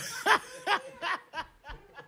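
A man chuckling: about five short laughs, roughly three a second, growing fainter.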